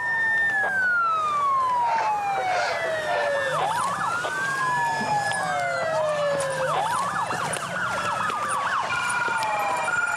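Several police sirens wailing at once, each rising quickly and falling slowly about every three seconds, the wails overlapping out of step. A faster yelping siren sounds over them in the middle.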